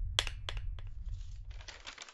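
A few sharp cracks in the first second, then a fine crackling from about halfway, over a low rumble.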